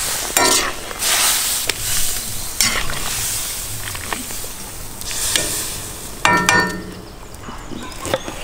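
Pieces of beef heart sizzling in a hot cast-iron kazan, with repeated swells of hiss as the meat is stirred with a metal skimmer. Two short harsh scraping sounds stand out, one right at the start and a louder one about six seconds in.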